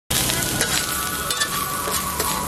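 Fried rice sizzling on a large flat griddle as a metal spatula stirs and scrapes through it, with a few sharp clinks of the spatula on the griddle.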